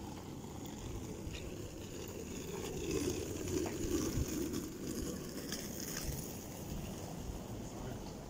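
Steady outdoor street background noise on a wet day, swelling slightly a few seconds in.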